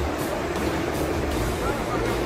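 Muddy floodwater rushing past in a torrent, a steady dense noise, with wind buffeting the microphone.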